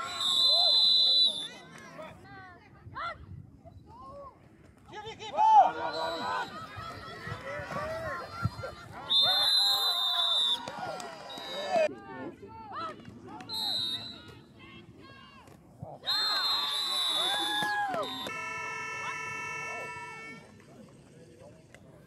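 Shouting from players and spectators at a youth American football game, cut through by several shrill referee's whistle blasts: one right at the start, then more about nine, fourteen and sixteen seconds in. Near the end a steady horn-like tone holds for about two seconds.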